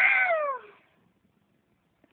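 The drawn-out end of a domestic cat's meow, falling in pitch and dying away before a second in.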